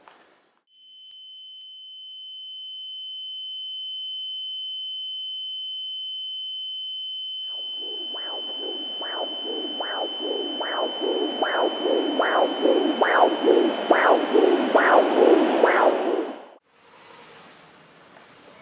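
A steady high-pitched electronic tone fades in and holds. About halfway in, the rhythmic whooshing pulses of an ultrasound scanner's Doppler heartbeat join it, a little more than one a second and growing louder. Both cut off suddenly near the end.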